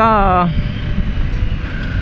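Riding noise on a moving Honda CBR 250R motorcycle: a steady rumble of wind on the microphone mixed with engine and road noise.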